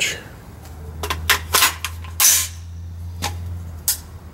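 Handling noise from gear being moved at a shooting bench: a string of separate sharp clicks and knocks, with one longer scrape about two seconds in, over a low steady hum.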